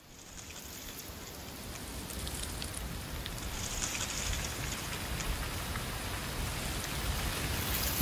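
Steady rain falling, an even hiss with faint scattered drop ticks, fading up from silence and growing louder.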